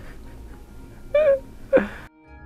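A dog whining twice: a short whine, then a second that drops quickly in pitch.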